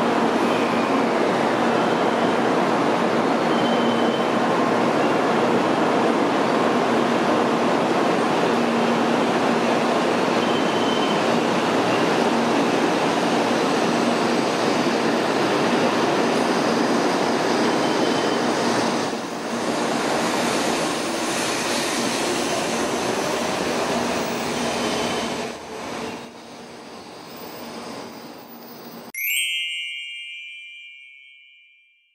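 N700-series shinkansen pulling out of the platform, its cars rushing past with a loud steady rumble and faint motor whine. About two-thirds of the way through the last car goes by and the sound falls away. Near the end a short bright chime rings.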